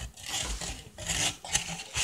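Close handling noise: a white plate rubbing and scraping against the phone right by its microphone, in a few soft, irregular scrapes.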